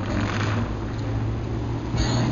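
Rushing hiss of water from the Bellagio fountain jets, with a steady low hum underneath.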